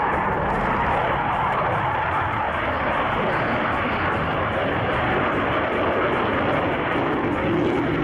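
Panavia Tornado ADV jet with its twin RB199 engines in afterburner as it flies past and climbs away: a steady, loud rushing jet noise.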